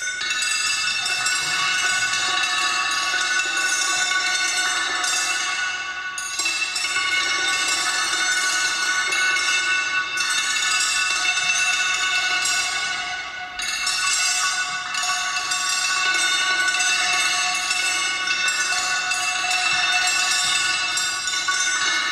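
Bell-like metallic tones: a dense cluster of ringing pitches, struck afresh about four times a few seconds apart, each time ringing on and slowly fading.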